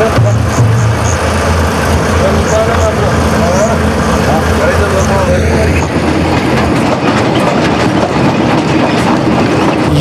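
Busy outdoor location sound: people's voices in the background over a low, steady rumble that stops about six seconds in.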